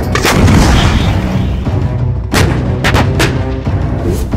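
Artillery fire: a sharp boom just after the start and three more in the second half, the last two close together, over a steady background music bed.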